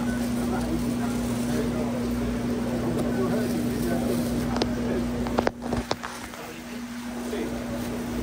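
Busy supermarket sound: indistinct chatter of shoppers over a steady electrical hum, with a few sharp clicks about five and a half seconds in, after which it goes quieter.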